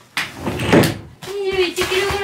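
A fusuma, a Japanese paper sliding door, being slid along its wooden track with a loud rasping slide about a second long. A high, held, wavering tone starts about a second and a half in.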